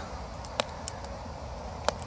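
A pause between spoken phrases: low, steady outdoor background noise with a few faint clicks, the last just before speech resumes.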